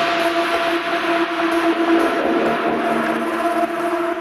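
Beatless dark electronic music: a drone of two sustained steady tones over a constant hiss, with no drum beat.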